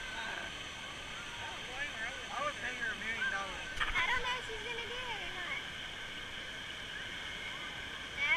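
Water park crowd ambience: voices and children's shouts that cannot be made out, over a steady rushing noise. The voices are busiest from about two seconds in to the middle, and the loudest comes about halfway; after that mostly the steady noise remains.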